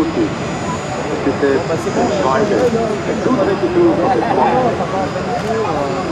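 Sukhoi Su-22 jets flying a display overhead, their engine noise a steady rushing sound under people talking.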